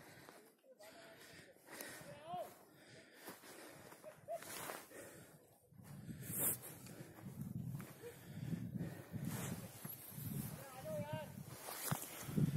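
Faint, indistinct voices in the open air, broken by short gaps. From about halfway, gusts of wind rumble on the microphone, with a brief sharp rustle just after.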